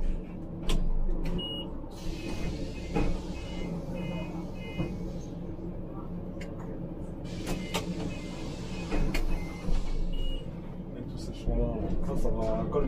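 A Scania Citywide articulated bus's natural-gas engine runs steadily as the bus drives, heard from the driver's cab. Two runs of short, high electronic beeps and a few scattered clicks sound over it.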